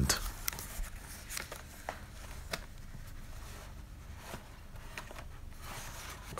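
Faint scattered clicks and rustles of plastic blister cards being handled and slid out of a cardboard carton, with the cardboard flaps being moved.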